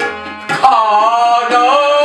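A man sings a Kumauni Ramleela song. He comes in about half a second in with one long held line of wavering pitch, over a steadily droning harmonium and tabla strokes keeping time.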